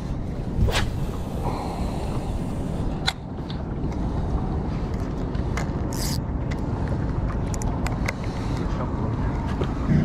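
Boat's outboard motor running steadily at trolling speed, with a few brief clicks.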